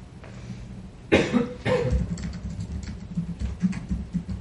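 A person coughing twice in quick succession about a second in, loud against the quiet room. Faint scattered clicks and taps, like keyboard typing, and a low hum continue underneath.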